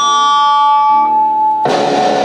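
Live band jam on electric guitar and keyboard: a couple of held notes ring on, then a loud full chord comes in about a second and a half in.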